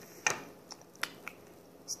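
A few light, separate clicks and taps of small objects being handled on a wooden tabletop, the strongest near the start and a sharp one about a second in.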